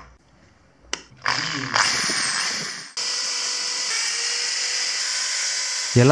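Bosch corded electric drill: a click about a second in, then the motor speeds up with a rising whine. From about three seconds it runs steadily, drilling into a plaster wall.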